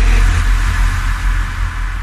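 A Bhojpuri DJ remix track fading out: a deep bass drone with a hiss under it, dying away steadily once the singing stops right at the start.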